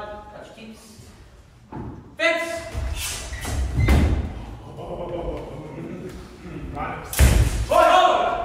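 Armoured fencers' bout in a large hall: heavy thuds of stamping footwork and blows on the wooden floor, strongest about four seconds in and again about a second before the end, with shouted voices in between.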